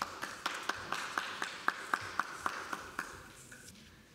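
Brief clapping by a few hands in an echoing hall, about four claps a second, dying away after about three seconds.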